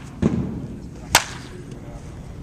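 A sharp, loud crack of a wooden baseball bat hitting a pitched ball during batting practice, a little over a second in, preceded by a dull thump about a quarter second in.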